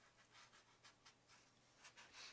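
Near silence, with faint strokes of a watercolour brush on paper.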